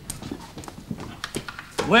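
Footsteps: a few irregular knocks of shoes on a hard stage floor as two men walk together.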